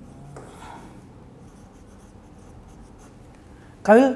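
A pen writing on paper: faint, light scratching strokes as a word is written out by hand.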